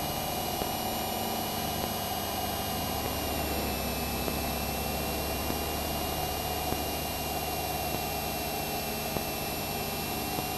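A Citabria light aircraft's engine and propeller running steadily through a barrel roll, heard from the cockpit as a low drone with a thin high whine held over it. The low part of the drone grows stronger about three seconds in.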